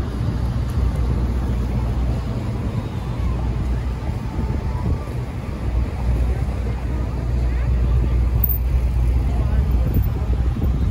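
City street traffic: cars and taxis passing through an intersection, a steady low rumble of engines and tyres that grows a little louder in the last few seconds.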